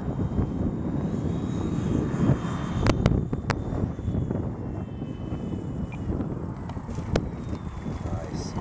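Twin electric motors and propellers of a radio-controlled F7F-3 Tigercat model on landing approach and rollout, over a rough, noisy rumble. A faint whine falls in pitch in the middle, and a few sharp clicks come about three seconds in and again near seven seconds.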